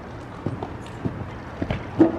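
Horse's hooves cantering on the soft dirt footing of an indoor arena: a run of dull thuds, the loudest at the end as the horse takes off over a jump.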